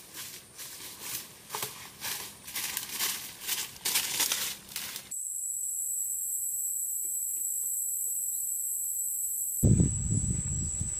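Irregular rustling and crunching of dry leaves and brush for the first five seconds. After an abrupt change, a steady high-pitched insect drone runs to the end.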